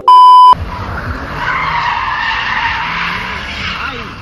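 A loud, steady beep lasting about half a second, then a car's tyres skidding continuously as it spins doughnuts in a burnout, with its engine rumbling underneath.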